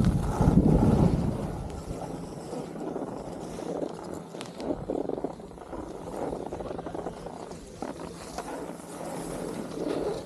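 Wind rumbling on the microphone, loudest in the first second, then skis sliding and scraping over packed snow on a downhill run.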